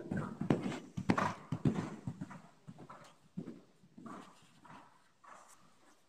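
Horse's hoofbeats thudding on the dirt footing of an indoor arena as it passes close by, then growing fainter as it moves away.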